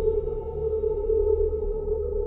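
Tense documentary background music: a steady held drone tone over a low rumble, unchanging throughout.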